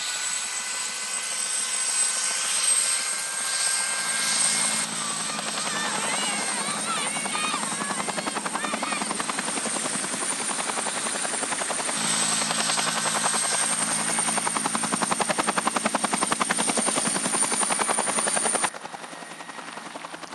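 Two-bladed utility helicopter running close by, rotor turning: a steady high turbine whine over rotor wash noise, with a rapid rhythmic blade beat. The sound jumps in level a few times where the shots change.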